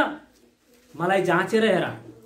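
A man's voice singing one drawn-out hymn phrase, starting about a second in, after a short pause.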